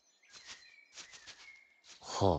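Near silence: faint outdoor ambience with a few soft, short chirps.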